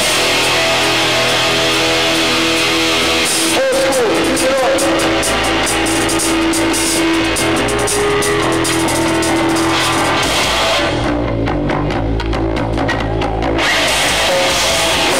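Live heavy band playing loud: distorted electric guitars and drums. Near the end the upper sound drops away for a couple of seconds, leaving low stop-start notes before the full band comes back.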